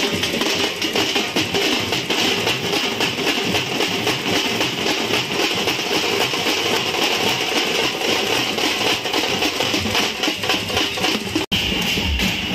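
A street drum band played with sticks, beating a loud, fast, dense rhythm without pause; the sound breaks off for an instant near the end.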